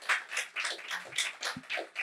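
Small audience applauding, a patter of separate hand claps.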